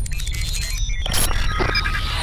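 Logo-intro music and sound design: a deep steady rumble under short electronic beeps and glitchy clicks, with a sharp click about a second in.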